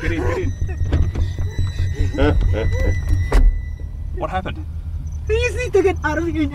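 Steady low rumble of a car's interior while driving, with a woman's short, distressed vocal sounds breaking in several times and a sharp click about three and a half seconds in.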